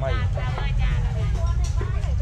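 People talking at market stalls, over a steady low rumble.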